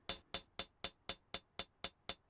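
Soloed closed hi-hat sample in Ableton's Impulse drum machine playing steady eighth notes, about four short, bright ticks a second. Its decay is being turned down to make each hit a bit more clicky.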